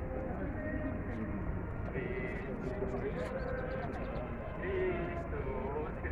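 Many men's voices singing together in a marching column, some notes held steady, with the scattered scuffs of footsteps on pavement.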